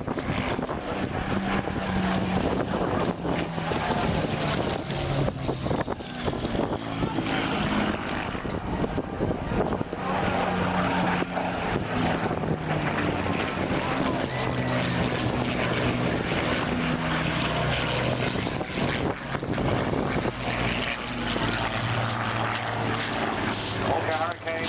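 Propeller-driven display aircraft flying overhead. The engine note rises and falls in pitch as it manoeuvres and passes, and drops lower near the end.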